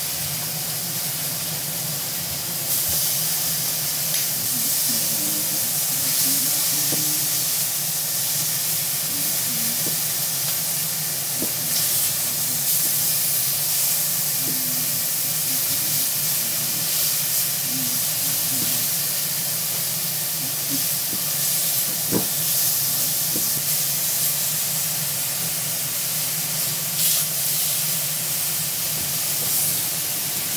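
Food frying in a hot iron wok: a steady sizzling hiss that gets louder a few seconds in and holds, over a steady low hum, with a few light clicks.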